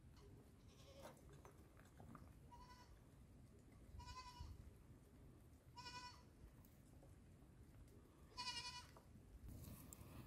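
Goats bleating: about four short, wavering bleats a second or two apart, faint, the last one the loudest.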